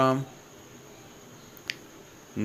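The last of a spoken word, then a faint steady hiss with one short, sharp click a little before the end.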